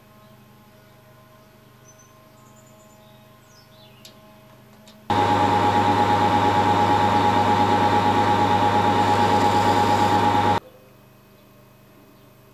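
Small hobby lathe running with a steady whine, turning a hex bar down to a round nozzle blank; it starts abruptly about five seconds in and stops abruptly about five seconds later.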